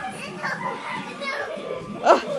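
Children playing: faint child voices and vocal noises while an older girl wrestles a toddler on a carpeted floor.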